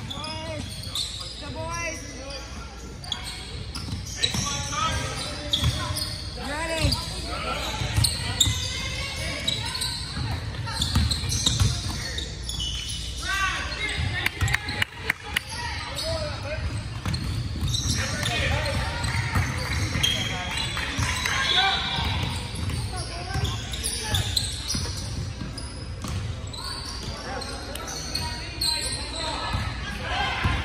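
Basketball bouncing on a hardwood gym floor during a game, with players and spectators calling out throughout. Everything echoes in the large hall.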